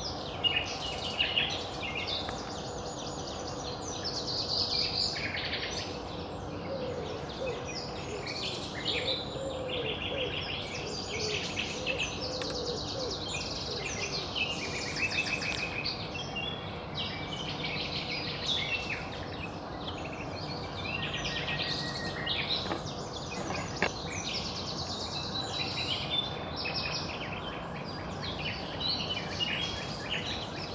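Several songbirds singing in overlapping, varied phrases and fast trills, continuous and fairly loud, over a steady outdoor background, with a few sharp knocks near the start.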